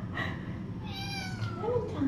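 A kitten meowing once, a long high-pitched call that starts about a second in and falls slightly in pitch.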